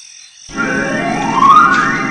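The hinged lid of an old rusted metal box creaking as it is worked open: a drawn-out creak that starts about half a second in and rises steadily in pitch.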